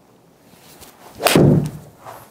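Golf iron striking a ball in a full swing: one sharp crack of impact about a second and a quarter in, with a short dull thud trailing it.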